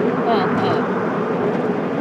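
Steady road and engine noise inside a moving car's cabin, with a constant low hum. A soft, short bit of voice comes about half a second in.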